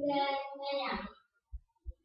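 A distant high-pitched voice, off-microphone, for about a second, then quiet broken by two soft thumps.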